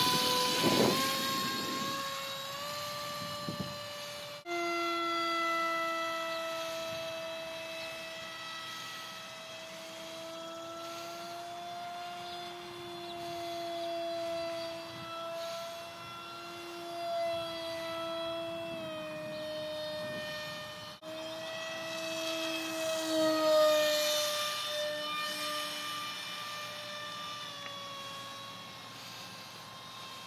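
Electric RC plane in flight: the Grayson Super Megajet v2 brushless motor on 3S and its 6x4 prop give a steady high whine. The whine rises in pitch over the first couple of seconds, then drifts slightly in pitch and swells and fades as the plane passes. The sound jumps abruptly at about 4 and 21 seconds.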